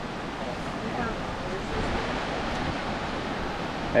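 Steady rushing of a waterfall and river below, an even, unbroken noise.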